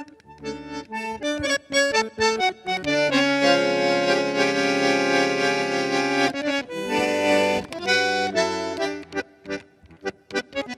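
Solo bandoneón playing: short, detached notes and runs, then a loud full chord held for about three seconds, then more quick phrases.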